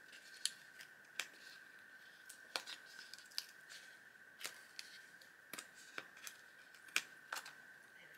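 Paper sticker being peeled slowly off its backing sheet by hand: faint crackles and a dozen or so sharp little ticks spread through, over a steady faint high tone.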